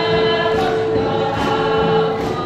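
A congregation and worship team singing a worship song together in a large hall, with one long note held throughout.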